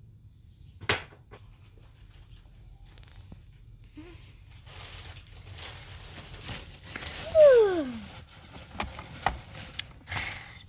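Small plastic toys and toy furniture being handled and set down: a single click about a second in, then soft rustling and knocks. About three quarters of the way through comes the loudest sound, a short falling tone.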